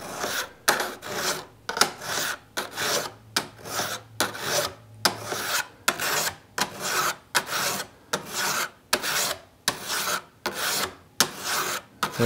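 Fret leveling file, a cant saw file set in a wooden handle, rasping back and forth across the metal frets of a guitar fingerboard, about two strokes a second. Each stroke levels the fret tops in diagonal passes.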